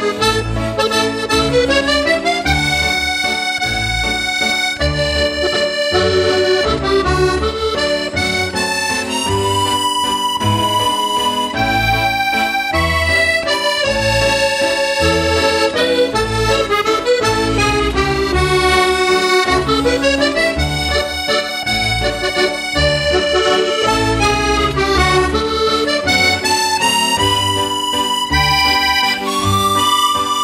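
Serenellini button accordion played solo in a slow waltz. The right hand carries the melody with chords over a steady, pulsing left-hand bass.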